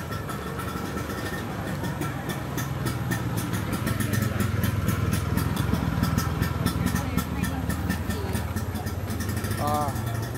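An engine running close by: a steady low rumble that grows louder a few seconds in and eases off near the end.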